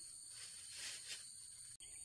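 Faint, steady, high-pitched chirring of insects in the background, with a soft hiss and one faint click near the end.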